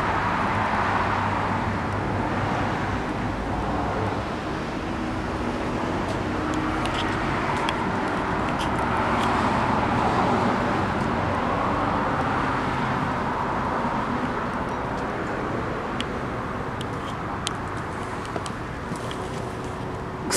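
Steady road traffic noise that swells and fades as vehicles pass, with a few light clicks in the second half.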